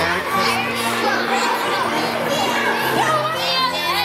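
Many children chattering and calling out together in a large room, over background music with long held low notes.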